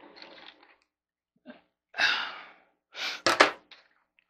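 A man's breathy exhale about two seconds in, then a short, sharp breath noise with a few clicks about a second later.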